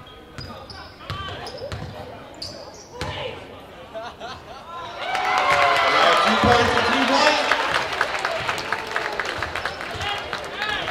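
A basketball bouncing on a gym floor, with players' voices echoing in the hall. About halfway through, a crowd in the bleachers breaks into loud cheering and shouting that carries on to the end.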